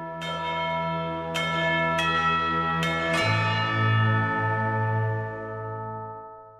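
Intro theme music: bell-like chimes struck about five times, ringing out over a low sustained drone that shifts to a lower note a little after three seconds in, then dies away near the end.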